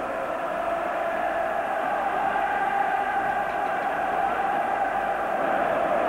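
Steady din of a large stadium crowd, many voices blended into one continuous noise with no single shout standing out.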